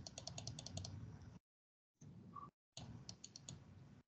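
Faint computer keyboard typing: a quick run of about ten key clicks in the first second and another short run near the end, with the sound cutting out completely in between, as heard through a video call's noise suppression.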